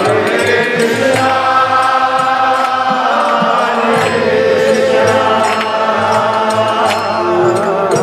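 Kirtan: many voices chanting a mantra together in long held lines over a harmonium, with drum and cymbal strokes running through it.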